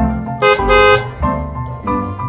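Cartoon truck horn sound effect honking twice about half a second in, a short honk then a longer one, over background music.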